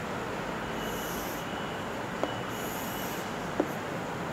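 Chalk scraping across a chalkboard as straight lines are drawn: two strokes of about half a second each with a thin squeal, and two sharp taps of the chalk against the board, over a steady hiss.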